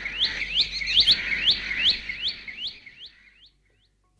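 Bulbul calling: a quick series of short rising notes, about three a second, fading out about three seconds in.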